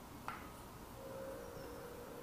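Faint steady buzzing hum, a little stronger from about a second in, with one light click about a quarter second in.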